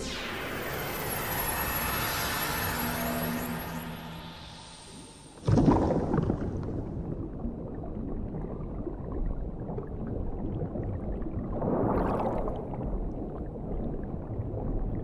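Animation sound effects: a shimmering, ringing effect that fades away over about five seconds, then an abrupt cut to a low underwater rumble with bubbling that swells briefly near the end.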